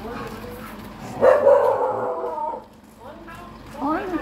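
A dog barking loudly, starting about a second in and lasting over a second, among people's voices.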